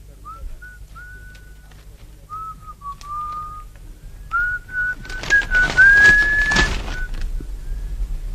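Someone whistling a short, wandering tune in several phrases, with a rustling, scraping noise under the whistling in the second half and a steady low hum beneath it all.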